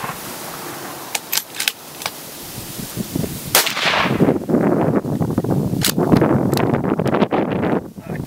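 Scoped bolt-action rifle fired twice, about two seconds apart, the first shot echoing. Lighter clicks of the bolt being worked come before them.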